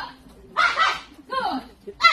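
Two short shouted calls from voices, one about half a second in and another just after a second.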